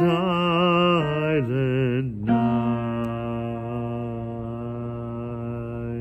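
A man singing solo: a couple of wavering notes, then a drop to one long, steady, held final note from about two seconds in that lasts to the end.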